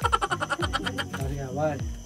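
Background music with a regular thumping bass beat, overlaid at the start by a quick burst of men's laughter and then by short voiced calls.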